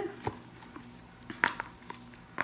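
Gloved hands flexing a silicone soap mold and pushing a melt-and-pour soap bar out of it: quiet handling noise with a few soft ticks and one sharp click about a second and a half in.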